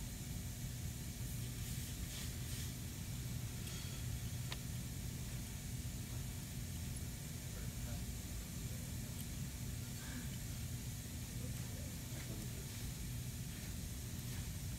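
Steady low hum with an even hiss, room noise, with one faint tick about four and a half seconds in.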